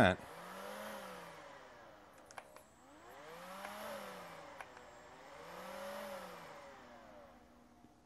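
MECO cordless handheld vacuum's motor whirs up and winds back down three times, each run lasting under two seconds, with light clicks between the runs. The battery cannot keep the motor going, although its gauge shows 50%, which the owner takes for an inaccurate charge reading.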